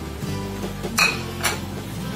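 Two sharp clinks about half a second apart, a spatula knocking against the frying pan as potato cubes and chicken are moved around, over background music.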